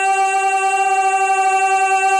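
A conch shell (shankh) blown in one held, steady note, full of overtones and with a slight waver, as sounded during a Hindu aarti.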